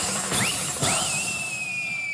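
Shrill whistling: short rising whistles about twice a second, then one long whistle held and slowly falling in pitch.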